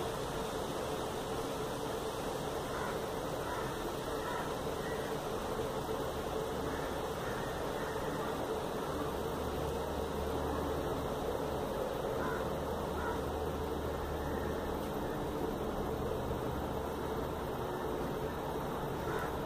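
Steady low hum and hiss of room noise, with faint soft snips of scissors trimming black thread every so often.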